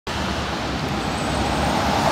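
Road traffic on a city street: a steady mix of engine hum and tyre noise that grows gradually louder as vehicles approach.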